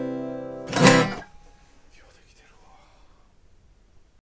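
Tacoma Roadking DM8C flattop acoustic guitar: a ringing chord fades, then a final strummed chord about three-quarters of a second in is damped short about half a second later.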